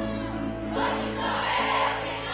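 Romantic pagode song performed live by a band: group vocals held over sustained band accompaniment, with a brighter, hissing layer coming in about three-quarters of a second in.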